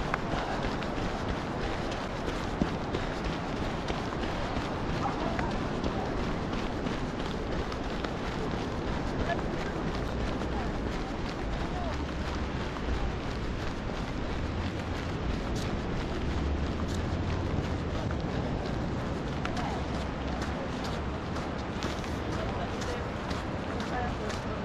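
Wind and surf on an open sandy beach, a steady rushing noise, with the runner's footsteps on the sand. Wind rumbles on the microphone from a little before halfway to about three-quarters of the way through.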